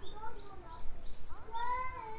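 Passers-by talking, and about a second and a half in a young child's high, drawn-out call. Small birds chirp in the background.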